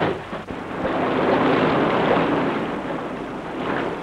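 Rushing, crashing water noise of an aircraft ditching into rough sea and throwing up spray, a Liberator bomber set down along the wave troughs. It swells about a second in and eases off toward the end.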